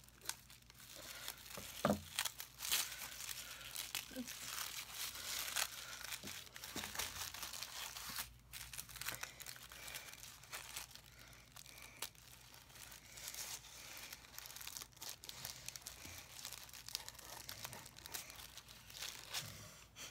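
Red tissue paper crinkling and rustling softly as it is handled and snipped open with scissors, a continuous fine crackle with a sharper click about two seconds in.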